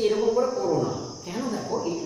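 A man's voice, lecturing, over a steady high-pitched drone like a chorus of insects.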